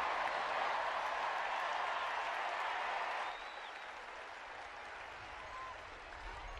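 Large ballpark crowd cheering and applauding a play in the field. The noise drops off sharply about three seconds in, leaving quieter crowd noise.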